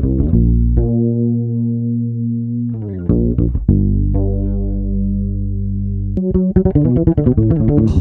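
Electric bass guitar track (direct-input) played back solo through a Pultec 500-series EQ that is boosting its low end, giving a deep, full bottom. Two long sustained notes, then a quick run of short notes near the end.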